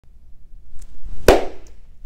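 A single sharp clap of hands coming together, about a second and a quarter in, after a faint rustle.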